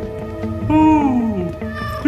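A cat meows once, about a second in: one long call that slides down in pitch, over soft background music.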